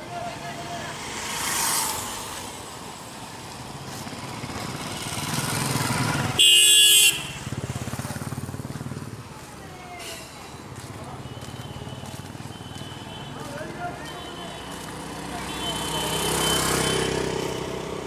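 Road traffic with motor vehicles passing in swells, and one loud vehicle horn blast lasting under a second about six and a half seconds in; thinner, fainter horn tones sound later.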